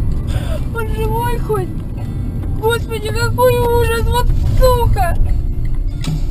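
A singing voice in phrases with held notes, over the steady low rumble of a car driving on a highway.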